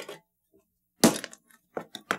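A hammer blow cracking something hard, one sharp loud crack about a second in, followed by a few faint clicks and another knock at the very end.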